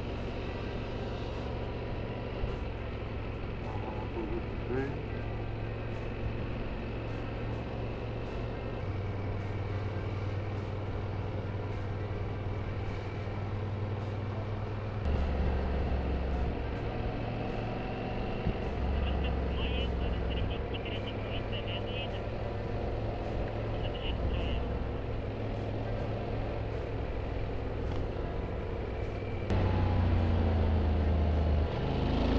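Motorcycle engine running at road speed, heard from the bike with wind on its mounted camera. The engine note steps up and down several times and grows louder about halfway through and again at the very end.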